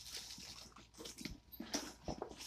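Soft rustling and a few light knocks as items are handled inside a cardboard box, with plastic packaging crinkling.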